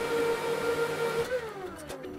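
HPE DL560 Gen10 rack server's cooling fans running with a steady whine, then winding down, the whine falling in pitch from a little over a second in, as the server powers off after shutdown.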